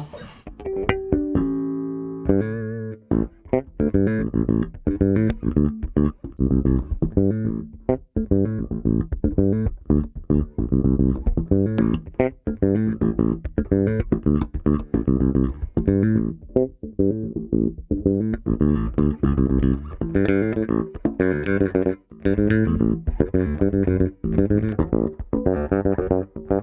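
G&L L-2000 electric bass played fingerstyle through an amp. A few held notes give way, after about two seconds, to a busy, rhythmic line of quick plucked notes.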